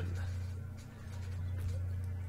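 Faint rustling and scratching as an earphone cable is handled and untangled, over a steady low hum.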